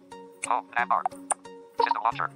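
Android TalkBack screen reader's synthetic voice announcing screen items in short, quick bursts as the focus moves, over background music with held notes.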